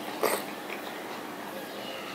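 Mouth sounds of a person eating ripe papaya by hand: one short, loud, wet slurp about a quarter-second in as a piece goes into the mouth, then a few faint soft chewing clicks.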